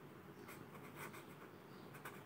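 Faint scratching of a pen writing on notebook paper, a few short strokes.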